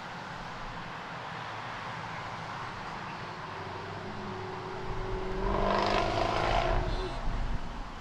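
A group of Renault Mégane R.S. and Clio R.S. hatchbacks driving toward the microphone, their four-cylinder petrol engines a steady hum. The sound swells to its loudest, with a slightly rising engine note, as the nearest car comes close about six seconds in, then falls away.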